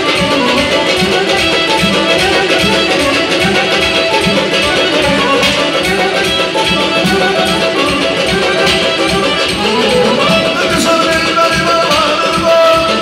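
Loud live band music in an Azerbaijani style: an instrumental passage with a sustained melody over a steady beat.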